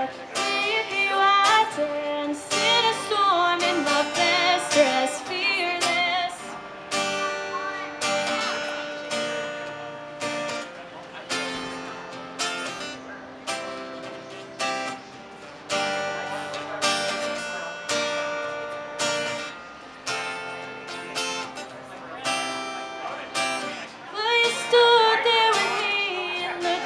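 Solo acoustic guitar strummed in a steady rhythm, with a woman's singing voice over it in the first few seconds and again near the end, the guitar alone through the middle.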